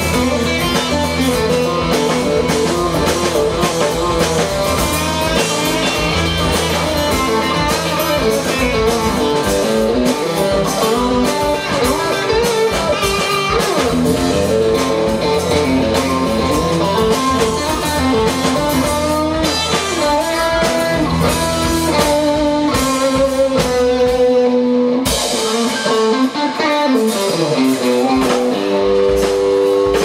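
Live country-rock band playing an instrumental stretch with no singing: electric guitar and strummed acoustic guitar over a drum kit. Near the end the low end drops away, leaving mostly the guitars.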